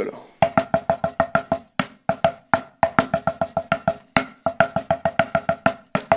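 Drumsticks on a Vic Firth practice pad playing paradiddles: short runs of quick, even strokes, about six a second, some accented, with brief pauses between the runs.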